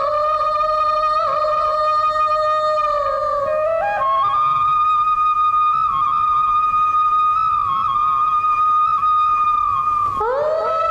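Tamil film song interlude: a single melody instrument holding long, steady notes with slight ornaments, jumping up an octave about four seconds in.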